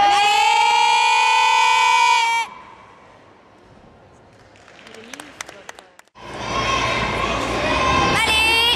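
Spectators in a gymnastics hall: a long, high, held call with a slowly rising pitch lasting about two and a half seconds, then a quieter stretch with a few sharp knocks, then loud crowd noise and cheering over the last two seconds.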